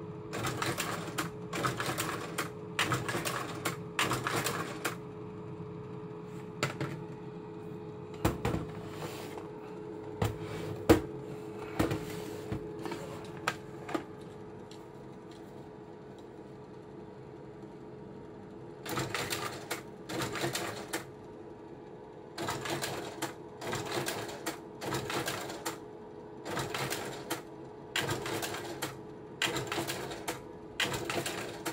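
Prestinox 680 Auto slide projector running with a steady fan hum while its slide-change mechanism clatters through short cycles about a second apart. The cycles come in a run over the first few seconds and another over the last ten seconds, with a few single clicks in between.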